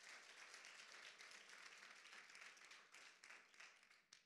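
Congregation applauding in praise, a steady patter of many hands clapping that dies away at the end.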